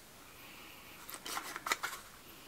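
Small paper tea packet being cut open and handled: faint rustling and a few light clicks and snips from about a second in.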